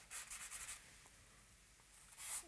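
Compressed charcoal stick scratching and rubbing across newsprint paper during shading, several quick short strokes in the first second, then going faint.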